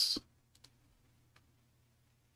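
A few faint, isolated clicks from a computer keyboard or mouse, two close together about half a second in and one more near the middle, over a low steady hum.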